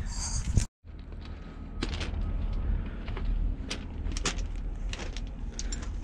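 Scattered crunches and clicks of someone walking on gravel, over a low wind rumble on the microphone. Just under a second in there is a brief dropout to complete silence.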